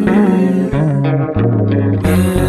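Music with a bass guitar and guitar, the bass line stepping down in pitch over a few held notes.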